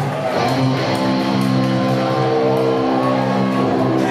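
Electric guitar through Marshall amplifiers, played live, letting a chord ring out steadily as the lead-in to the next song.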